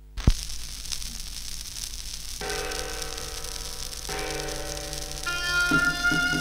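A stylus drops onto a spinning Philips record with a single sharp thump just after the start, followed by the hiss and crackle of surface noise from the run-in groove. The recorded music starts about two and a half seconds in, and more instruments join near the end.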